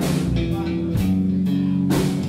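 A country band plays on between sung lines, with guitar and bass holding notes and a drum or cymbal hit about once a second.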